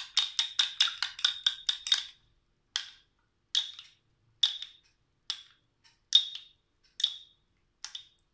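A small spoon beating egg white in a porcelain cup, clinking quickly against the cup's side about five times a second. About two seconds in it slows to single ringing clinks, roughly one a second.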